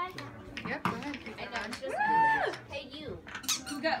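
A single high-pitched squeal from a voice about two seconds in, lasting about half a second, rising and falling at the ends, over faint room chatter and small clicks.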